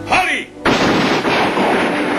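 A short shouted cry, then about half a second in, loud gunfire breaks out suddenly and keeps going as a dense, continuous volley.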